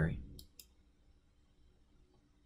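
Computer mouse clicking, two short, sharp clicks in quick succession about half a second in.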